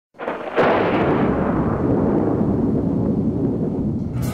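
An avalanche control explosive charge detonating on a snow slope: a boom just after the start, a louder crack about half a second in, then a long low rumble that carries on.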